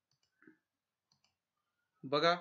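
Near silence with a faint click about half a second in and a fainter pair of clicks a little past the middle: a computer mouse clicking.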